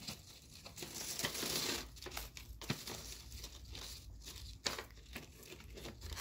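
Paper shopping bag used as gift wrap, crinkling and rustling as jute twine is drawn around the parcel and looped underneath it, with a few sharp crackles of the paper.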